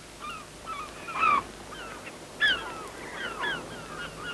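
Gulls calling: a string of short cries, each falling in pitch, with two louder ones about a second and about two and a half seconds in.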